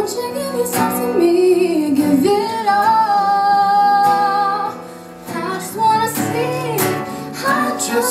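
A young woman singing a slow melody with a long held note a few seconds in, over an acoustic guitar accompaniment. The music dips briefly in loudness about halfway through.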